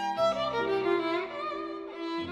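Solo violin playing a classical melody: a few quick notes, then longer held notes sung out with vibrato.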